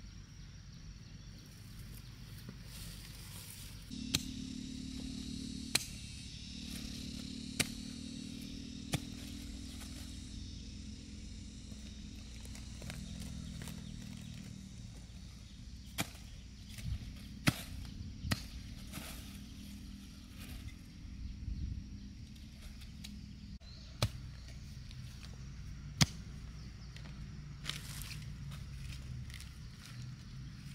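Digging up taro by hand: scattered sharp knocks of a small hoe striking the ground and roots, about ten in all at uneven intervals, among soft rustling of soil and weeds.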